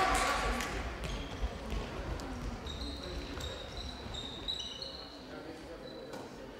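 Indoor handball play in a sports hall: the players' shoes give several short, high squeaks on the court floor from about three to five seconds in, among the knock of the ball and voices echoing in the hall.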